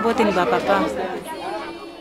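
An adult speaking over a group of children singing. The voices fade out in the second half, leaving a single held note.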